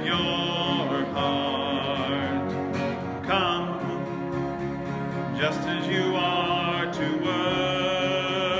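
A worship song: a voice sings the chorus lines over a continuous instrumental accompaniment.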